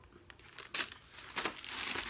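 Plastic product packaging crinkling as it is handled: a couple of short rustles, then a longer rustle near the end.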